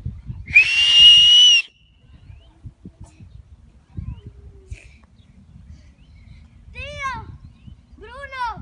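A shrill whistle, one steady high note held for about a second just after the start. Near the end comes a short high-pitched cry.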